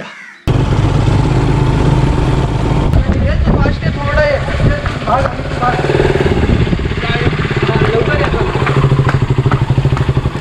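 Motorcycle engine running steadily with a throbbing beat, cutting in suddenly about half a second in. Voices talk over it partway through.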